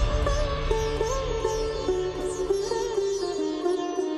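Background music: a sitar playing a melody with bending, gliding notes over a steady low drone, cutting in abruptly.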